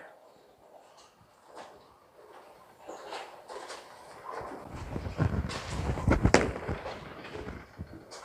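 Legends Pure Diamond bowling ball rumbling down the lane into the pins, with a clatter of pins building from about three seconds in and loudest around six seconds.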